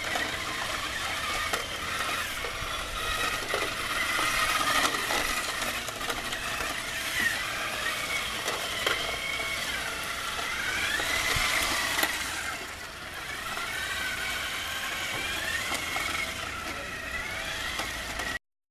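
Electric drive motors of small wheeled robots whining, the pitch sweeping up and down several times as they speed up and slow down, with a few sharp clicks.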